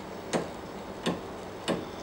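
A slack toothed timing belt on a 3D printer plucked by finger three times, each pluck a short dull tick with almost no ring. The belt is incredibly loose, vibrating at only about 48 Hz on a tuner app.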